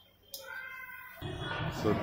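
A short high-pitched squeal, about half a second long, comes shortly after the start. Steady background noise follows, then a man's voice near the end.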